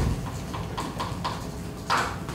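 A quick run of about six light, hollow taps, roughly five a second, over steady room noise.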